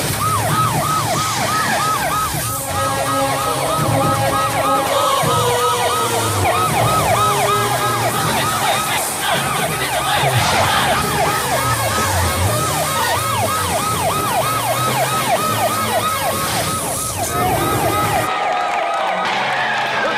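A fast yelping siren, its pitch rising and falling about four times a second, over film background music; the yelping stops about three-quarters of the way through.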